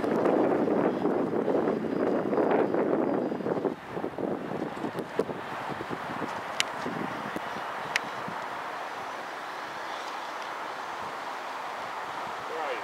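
Wind rushing over the microphone, loud for about the first four seconds and then falling to a steadier, quieter hiss, with two sharp clicks later on.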